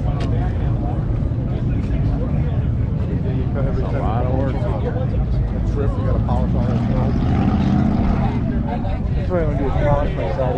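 Bystanders' voices talking over a constant low rumble, with the talk clearest from about four seconds in and again near the end.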